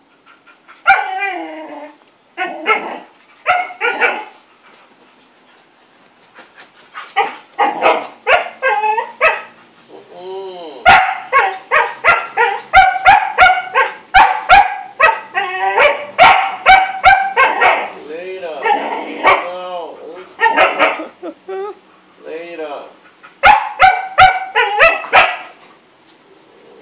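Border collie barking and whining over and over: sharp yelping barks mixed with high, bending whines, in bursts with short pauses, most continuous in the middle. The dog is demanding that a sleeping person get up.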